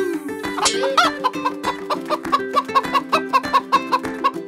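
Cartoon chicken clucking sound effect, a rapid run of evenly spaced clucks starting about a second in, over children's background music.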